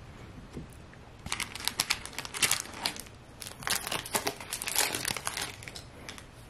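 Foil wrapper of a hockey card pack crinkling as it is torn open, in two spells of about two seconds each.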